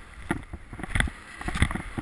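Skis scraping and chattering over uneven, chopped-up snow, with irregular knocks and thumps; the loudest come about a second in and again a little past halfway.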